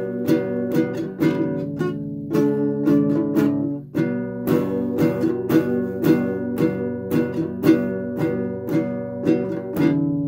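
Small acoustic guitar strummed in a steady rhythm of chords, a few strokes a second, with a brief break about four seconds in.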